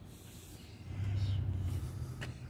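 Low, steady engine rumble in the distance, swelling about a second in.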